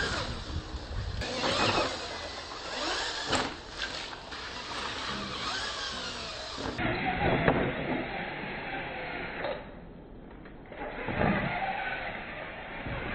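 Radio-controlled monster trucks' motors whining up and down in pitch as the trucks rev and jump, with tyres churning dirt and several sharp knocks as they land and tumble.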